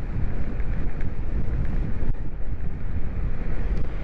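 Steady wind rush and buffeting on the camera microphone of an electric bike travelling at speed along a road.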